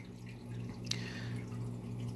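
Quiet steady hum and faint trickle of aquarium water circulation, with a single click about a second in.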